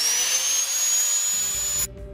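Angle grinder motor spinning up, its whine rising steadily in pitch, then cut off abruptly near the end.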